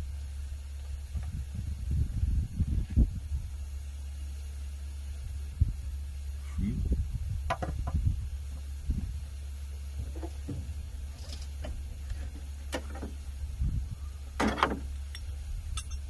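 Combination wrench working bolts on the top of a Cat C15 diesel during a jake brake solenoid change: scattered metal clinks and knocks, the loudest about fourteen and a half seconds in, over a steady low hum.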